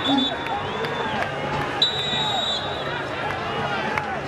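Football stadium crowd noise from a match broadcast, with a long shrill referee's whistle about two seconds in, blowing for a foul that gives a free kick.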